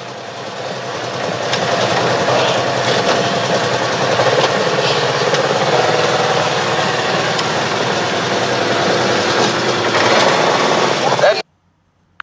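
Wind rushing over a phone's microphone, with the engine of a vehicle being ridden underneath. It builds over the first couple of seconds, holds steady, then cuts off abruptly near the end.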